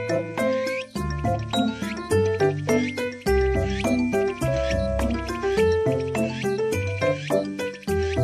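Piano music: chords and melody notes over held bass notes, with a steady ticking beat and short upward swoops high in the mix.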